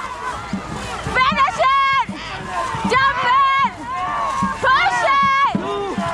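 Dragon boat crew shouting loud, high-pitched calls in a steady rhythm, about one every half to three-quarters of a second, in time with the paddle strokes. Paddles splash and water rushes beneath the shouts.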